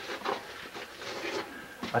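Shoes scuffing and scraping on sandstone steps, with clothing rubbing against the rock, as someone climbs through a narrow crevice; a voice starts right at the end.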